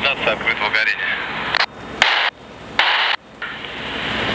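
Indistinct voices at a fire scene in the first second, then two sudden, short bursts of hiss about half a second long each, with quieter gaps between them.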